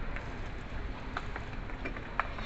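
Supermarket background noise: a steady low hum with a few light clicks and knocks scattered through it.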